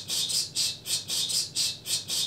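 A quick, even run of short hissing ticks, about four to five a second, standing in for a slideshow's pictures clicking on through one after another.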